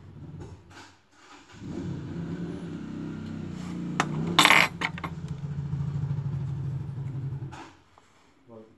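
A motor runs with a steady low hum from about a second and a half in until shortly before the end, with a loud, short rush of noise about halfway through.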